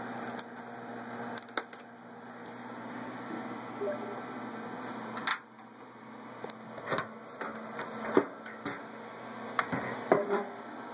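Hands and camera handling a computer case: scattered sharp clicks and knocks, the loudest about five and eight seconds in, over a steady low hum.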